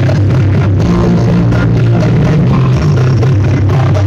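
Music played very loud through a trailer-mounted paredão sound system of stacked Bluster JK6 woofers, with heavy bass dominating.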